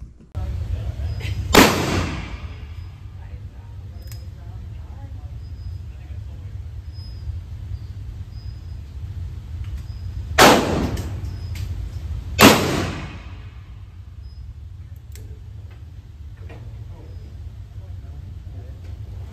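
Three shots from a Taurus Tracker .357 Magnum double-action revolver, each with a ringing echo: one about a second and a half in, then two more about two seconds apart near the end. A steady low hum runs underneath.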